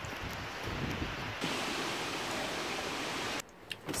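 Strong wind blowing, a steady rushing noise that grows louder about a second and a half in and cuts off suddenly near the end.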